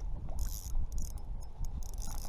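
Daiwa Fuego spinning reel in a fight with a running striped bass: its gears and drag clicking in about three short bursts as line is cranked in and pulled out. Underneath is a low rumble of wind on the microphone.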